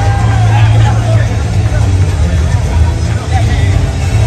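Loud arena music with a heavy, steady bass, and voices in the crowd and cage talking over it.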